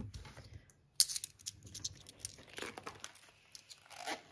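Coins and paper being handled on a table: a sharp click about a second in, followed by scattered rustling and crinkling.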